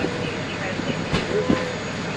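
Steady low rumble of a large vehicle, with two sharp clicks a little past the middle, the second the loudest.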